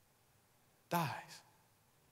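A man's voice speaking one word, "dies", about a second in, falling in pitch and ending on a breathy hiss; the rest is near silence.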